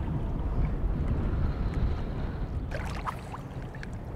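Wind buffeting the microphone: a steady, uneven low rumble, with a short cluster of clicks about three seconds in.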